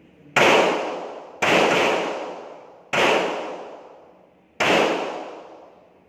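Four handgun shots fired one at a time on an indoor shooting range, each a sharp crack followed by a long echoing decay off the range walls. They come about one to one and a half seconds apart.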